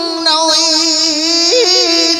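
A man's singing voice holding one long note with a slow, wavering vibrato over backing music, with a few short notes near the end.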